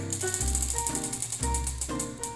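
Background music with a pulsing bass, over the rapid ticking of a spinning prize wheel's flapper striking its rim pegs; the ticks come thick and fast for about the first second, then thin out as the wheel slows.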